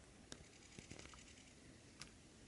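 Near silence: faint outdoor hush with a few faint ticks.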